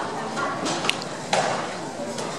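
Taekwondo uniforms (doboks) snapping with the team's synchronized punches: a sharp crack about a second in, then a louder one just after that trails off in the hall's echo, over a murmur of voices.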